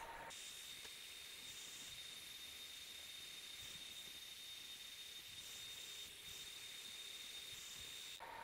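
Faint steady high-pitched whine over a low hiss, from a small portable laser engraver running a job.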